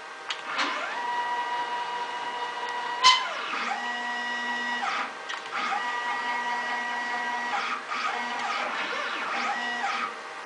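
Stepper motors on a home-built CNC mill whining as the axes are jogged under Mach3. There are several moves, each with a pitch that rises as the motor speeds up, holds steady, then falls as it slows, and a sharp click about three seconds in.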